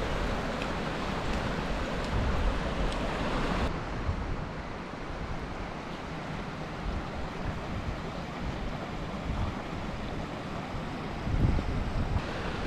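Wind buffeting the microphone over a steady rushing hiss of water. About four seconds in the hiss drops away abruptly, leaving a quieter, gusty low wind rumble.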